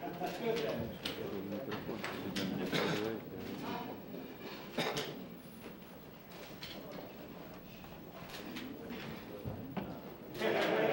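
Indistinct conversation of several people in a large room, loudest in the first few seconds and fading to a low murmur, with a few sharp clicks, the clearest about five seconds in.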